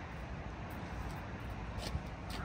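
Steady low background rumble and hiss, with a couple of faint ticks in the second half.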